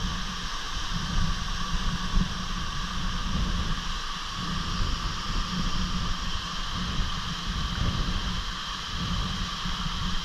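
Waterfall pouring onto rock and into a plunge pool, a steady, unbroken rush of water noise. A fluttering low rumble runs underneath it, the spray and moving air buffeting the microphone.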